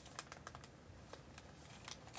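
Faint, irregular light tapping clicks, several a second, like fingers typing or tapping on a device.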